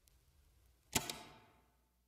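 Stylus dropping onto a vinyl record: a sharp click about halfway through, a smaller second click just after, and a brief hiss trailing off. The rest is faint.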